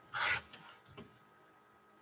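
A rotary cutter pushed once along a ruler, slicing through fabric on a cutting mat: a short rasp, followed by a couple of faint clicks.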